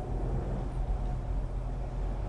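Steady low rumble of a vehicle's road and engine noise, heard inside the cabin at highway speed. A faint thin steady tone fades out about a second in.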